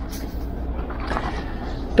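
Steady low rumble of city street traffic with a faint even hiss, no single event standing out.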